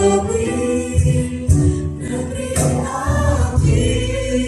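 Live worship band and several voices singing a Sundanese-language Christian song together, with held sung notes over a band accompaniment with a recurring low beat.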